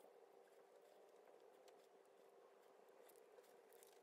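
Near silence, with faint soft brushing of a makeup brush being worked over the skin.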